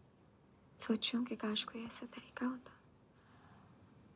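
A woman speaking softly in a hushed, near-whispered voice for about two seconds, starting about a second in; faint room hiss around it.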